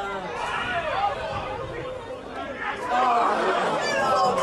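Many voices overlapping in chatter and calls on a football ground, with no single clear speaker.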